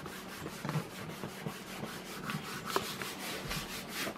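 Hands rubbing and pressing over a folded sheet of paper, a dry scuffing made of many small irregular strokes.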